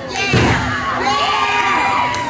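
Ringside wrestling crowd shouting and cheering, with long high-pitched yells held through the second half. A thud about half a second in.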